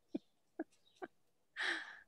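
Soft laughter from one person: a few short voiced chuckles about half a second apart, then a louder breathy outbreath near the end.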